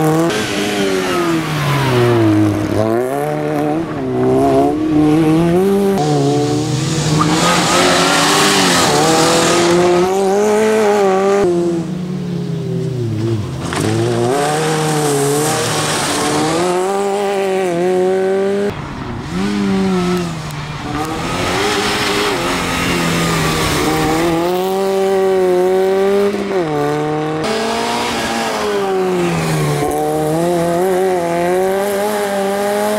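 Fiat Seicento rally car's engine revving hard on a special stage, its pitch climbing and dropping again and again as the driver accelerates, shifts and lifts off through the corners.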